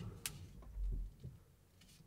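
Quiet cabin of an electric car creeping to a stop, with one sharp click about a quarter second in and a low thump about a second in.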